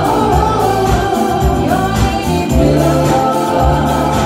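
Live reggae band playing through the venue's PA, with sung vocals over a bass line and a steady drum beat.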